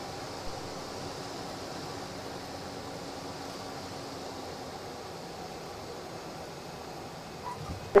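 Steady cockpit noise of a Cessna Caravan 208 during landing: its turboprop engine, throttled back, and the airflow make an even hiss with a faint low hum, with a couple of soft bumps near the end.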